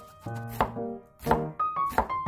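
Kitchen knife chopping kimchi on a cutting board, about three sharp strikes, with a light melodic music track underneath.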